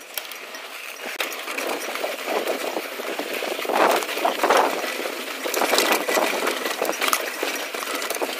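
2015 Intense Tracer T275c full-suspension mountain bike descending rocky, gravelly singletrack: tyres crunching over loose dirt and stones, with a dense clatter of chain and parts rattling. It is heard from the rider's chest and gets rougher and louder about four and six seconds in.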